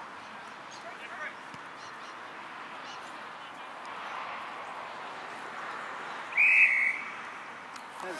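A single short blast of an umpire's whistle a little over six seconds in, one steady high note, over a low background of distant voices.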